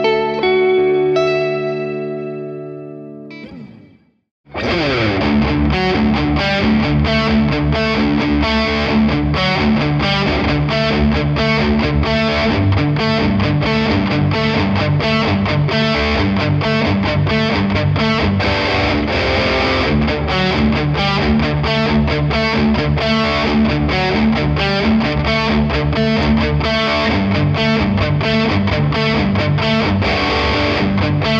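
Electric guitar (Ibanez RG631ALF with Fishman Fluence Modern pickups) played through a Blackstar combo amp. It opens with a chord on the neck pickup's passive voicing that rings and fades away over about four seconds. After a brief silence, fast, tightly picked distorted riffing on the bridge pickup's active voicing runs on steadily.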